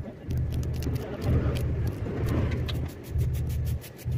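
A small knife cutting fresh coriander held in the hand, making a run of light clicks and snips, over a steady low rumble that drops out briefly a few times.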